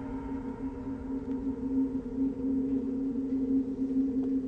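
Eerie film-score underscore: a steady, sustained low drone of held tones.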